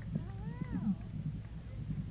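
Faint outdoor crowd ambience: distant voices over a steady low rumble, with one drawn-out rising-and-falling voice early on and a few light knocks.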